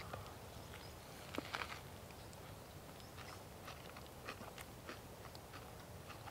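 A man biting into and chewing a hamburger: faint, irregular chewing clicks, the loudest about a second and a half in.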